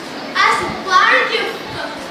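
Only speech: a boy speaking, two short phrases.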